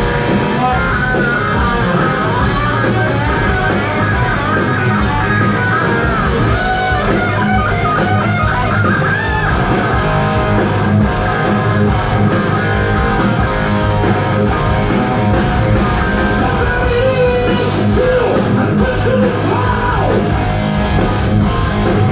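Heavy metal band playing live in a concert hall, with distorted electric guitars, bass and drums, heard from the audience.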